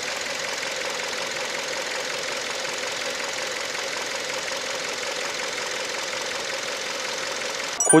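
Kia K5 2.0 LPI's Nu four-cylinder LPG engine idling steadily with the hood open. The dealer presents it as an engine free of chronic problems. The sound cuts off abruptly just before the end.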